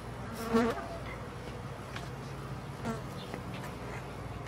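Backyard hens clucking softly while foraging: one short call about half a second in and a fainter one near three seconds, over a steady low hum.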